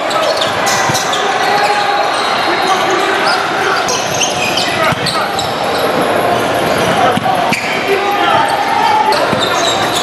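Basketball gym din during play: basketballs bouncing on a hardwood court amid the chatter of many players and spectators, echoing through a large hall.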